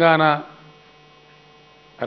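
A man's voice through a microphone ends a word in the first half second. Then a steady electrical hum holds several fixed tones until the end.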